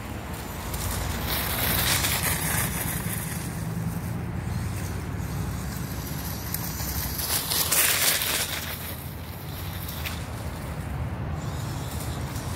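Brushed-motor ECX Torment 1/18-scale RC truck driving over grass and dry leaves, under a steady low hum, with two louder rushing surges, about a second and a half in and again about seven and a half seconds in.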